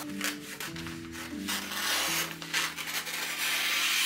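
Wrapping paper rustling and rubbing as a large sheet is handled and smoothed, louder in the second half, over soft background music.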